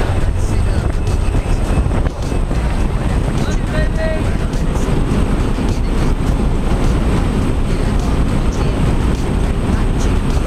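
Loud, steady rush of slipstream wind and aircraft engine noise through the open jump door of a small plane in flight, buffeting the camera microphone.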